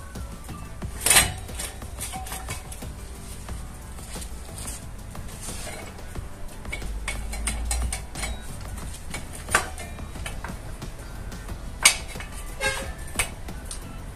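Metal clinks and knocks as a motorcycle's rear wheel is worked off the swingarm, with the loose drive chain and fittings knocking together. There are a handful of sharp knocks, the loudest about a second in and several more near the end, over music in the background.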